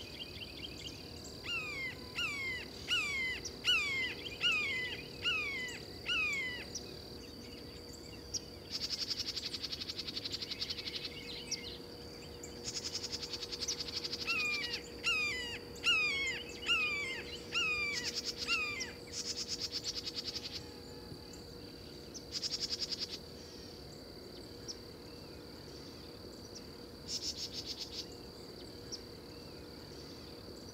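Insects in a morning chorus: a steady high drone, broken by bouts of loud, fast-pulsing trills every few seconds. Over it a bird sings two runs of repeated downslurred whistled notes, about two a second, near the start and again around the middle.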